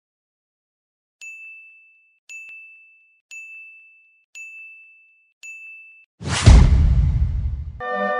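Five electronic beeps, about one a second, each a short steady high tone. They are followed by a sudden, much louder hit with a deep boom that fades over about a second and a half.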